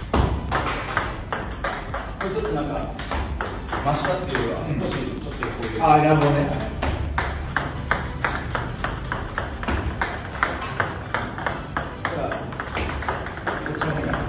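Table tennis serves in quick succession: a rapid run of sharp clicks from the paddle striking the plastic ball and the ball bouncing on the table, with loose balls knocking together near the net. The serves are heavily cut backspin serves, which draw the balls back toward the net.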